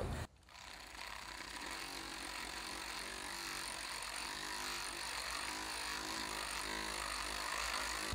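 Handheld electric orbital buffer running steadily, its pad buffing paraffin wax into a concrete mold surface.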